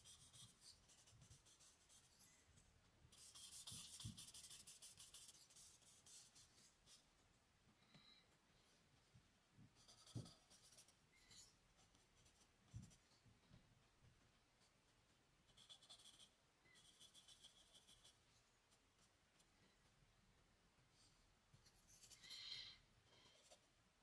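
Faint scratching and rubbing of a charcoal stick on drawing paper, in runs of strokes: the longest a few seconds in, another shorter run about two-thirds through. A few soft low knocks come between the strokes.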